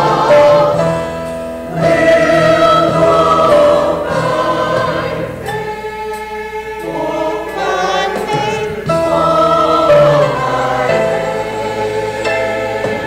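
Mixed choir of men's and women's voices singing together, holding notes and moving between them every second or so, with a softer passage about halfway through.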